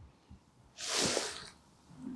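A single breath from a person close to the microphone: a short, soft hiss lasting under a second, about a second in, between stretches of quiet.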